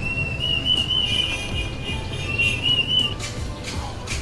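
A high whistling tone, held and wavering slightly in pitch, lasting about three seconds over background music.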